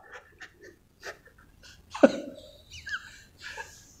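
Soft breathing and faint small clicks, with a short vocal sound about two seconds in that falls in pitch.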